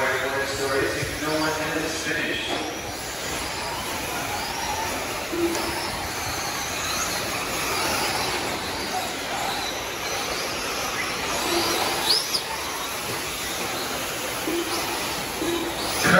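Electric 1/8-scale RC truggies racing on a dirt track: high-pitched motor whines that rise and fall as the trucks accelerate and brake, over a steady rush of tyre and track noise.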